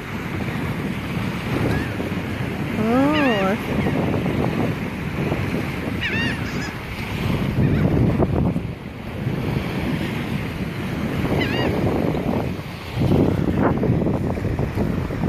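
Laughing gulls calling: a wavering, rising-and-falling call about three seconds in, then shorter high calls about six seconds in and again later. Under them, a steady rush of wind on the microphone and small surf at the shoreline, gusting louder near the end.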